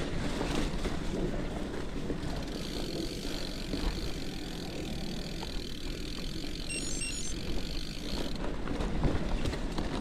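Cannondale Topstone gravel bike rolling along a dirt forest trail: steady tyre noise over dirt and leaves with small knocks and rattles over bumps, and wind rumbling on the action-camera microphone.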